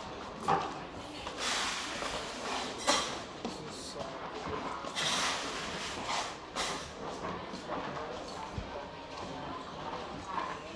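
Indistinct background voices, with brief rustling swells and a few light knocks.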